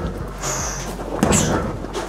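A 100 kg heavy punching bag taking front kicks, landing as dull thuds about twice.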